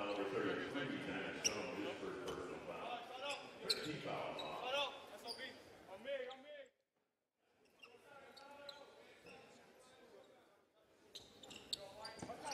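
Basketball game sound in an arena: a ball bouncing on the hardwood court amid crowd chatter. About six and a half seconds in, the sound cuts out completely for a moment, then returns quieter.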